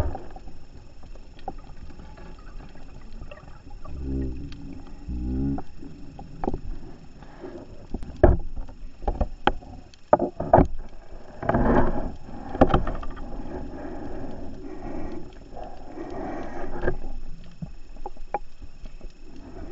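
Scuba diver's regulator breathing underwater: bubbling exhalations about 4 s in, and again around 12 s and 16 s, with scattered sharp clicks between them.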